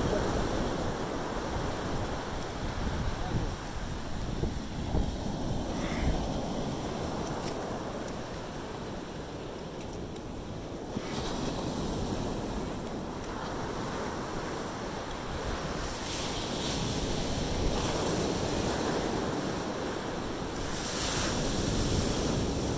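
Gentle surf washing in over wet sand, with wind buffeting the microphone throughout; the wash swells louder twice, about two-thirds of the way through and again near the end.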